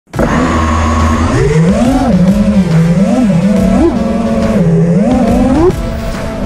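FPV quadcopter's brushless motors and propellers whining, heard through the drone's onboard camera. The pitch holds steady for about the first second, then climbs and swings up and down as the throttle is worked in flight.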